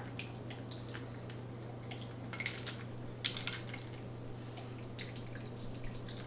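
Thick blackberry cocktail dripping and trickling through a fine-mesh strainer into a stemmed glass, with a few light metallic clicks from the strainer and shaker. A steady low hum sits underneath.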